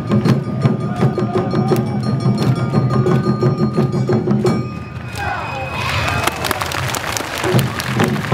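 Awa Odori festival band music: drums and a small hand gong beat a steady rhythm under a held high flute note. About five seconds in the drums drop out for a couple of seconds while voices take over, and the beat returns near the end.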